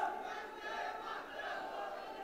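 Faint crowd noise from an audience in a large hall, voices calling out and dying down to a low murmur.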